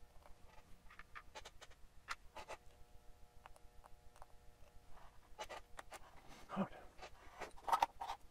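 Small clicks and rustles of fingers handling a kit circuit board and its component leads, with a couple of louder knocks near the end as the board is clamped into a holder. A faint steady hum runs underneath.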